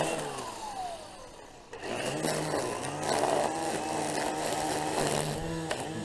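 Milwaukee M18 brushless battery string trimmer running in low mode: its electric motor winds down with a falling whine over the first second or two, then starts up again about two seconds in and runs with a steady hum as the line cuts grass.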